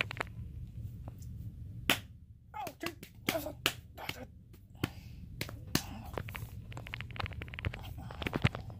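Scattered sharp clicks and smacks, some coming in quick runs near the end, over a steady low hum.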